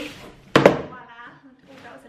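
Opened side panel of a large cardboard stroller box falling onto the floor with a loud bang about half a second in.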